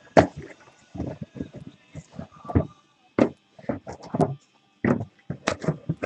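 About a dozen irregular knocks and thumps spread across a few seconds, from objects being handled and set down on a table.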